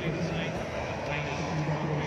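Engine of a powered hang glider (flex-wing microlight trike) running steadily as it flies overhead, with voices in the background.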